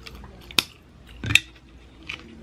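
Close-miked eating sounds: two sharp, crisp bites or crunches about three-quarters of a second apart, the second the louder.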